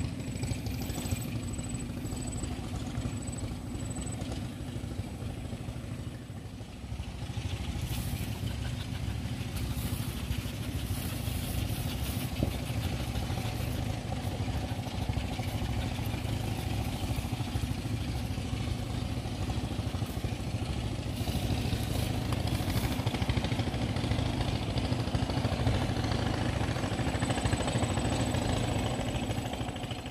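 A steady, engine-like low hum runs throughout. From about eight seconds in, patches of scratchy noise come and go as a puppy digs into a burrow with its paws and nose.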